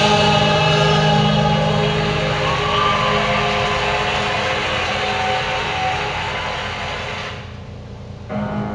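Choral music with long held sung notes, fading out near the end.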